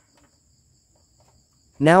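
Near quiet, with a faint steady high-pitched insect trill running throughout; a man's voice begins right at the end.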